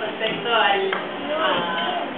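Voices talking, with one short sharp click a little before one second in.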